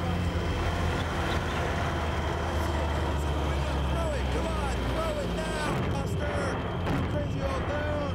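A vehicle engine running with a steady low hum, under several young men shouting jeers and taunts.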